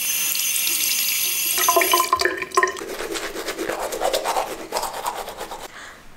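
Water running from a bathroom tap for about a second and a half, then a manual toothbrush scrubbing teeth in rapid back-and-forth strokes.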